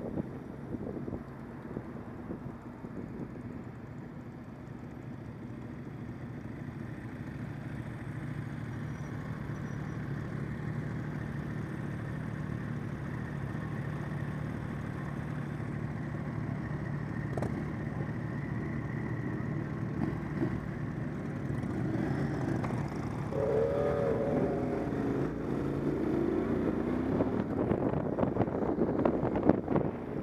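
Motorcycle engine running at low speed and idling in slow group traffic, heard from the rider's own bike. About three-quarters of the way in, the engine note rises as the bikes pull away, and the sound grows louder toward the end.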